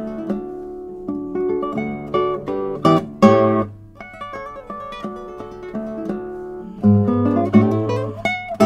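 Classical guitar by luthier Michael Ritchie played fingerstyle: plucked single notes and held chords ringing on, with louder full chords about three seconds in and again near the end.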